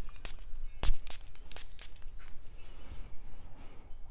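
Spray pump of a Byredo eau de parfum bottle pressed several times, giving short, sharp sprays in the first couple of seconds, the strongest just under a second in.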